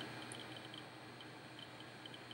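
Quiet room tone with faint, small high-pitched ticks repeating every few tenths of a second.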